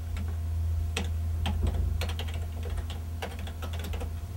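Typing on a computer keyboard: a run of irregularly spaced keystrokes, entering a login name and password, over a steady low hum.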